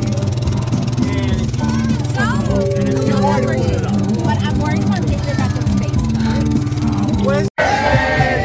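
People's voices talking over a steady low rumble, which cuts out abruptly for a moment near the end.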